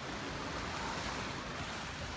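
Small waves washing up on a sandy beach, with wind rumbling on the microphone.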